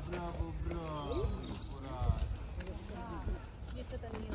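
People talking at a distance in the background, with a few short knocks scattered through.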